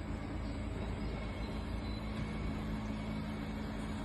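City bus driving past with a steady low hum over road noise.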